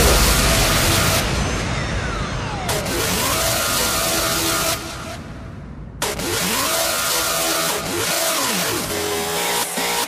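Hardstyle track in a breakdown. The heavy kick fades out, then a long falling pitch sweep and gliding, rev-like synth sounds follow. The track thins out briefly before coming back in full just before the middle.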